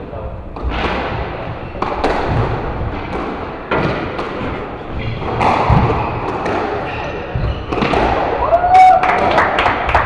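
Squash rally: the ball cracks off rackets and the walls about every one to two seconds in a reverberant court. A heavy thud comes about six seconds in as a player goes down on the wooden floor.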